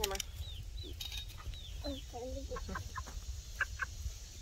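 Young chicken peeping: a few short, high chirps, each falling in pitch, in the first two seconds.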